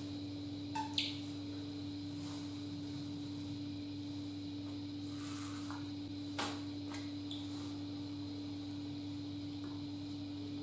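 Steady low electrical hum of room tone, with a few faint clicks and soft handling noises from a small plastic bottle being worked over a bare foot.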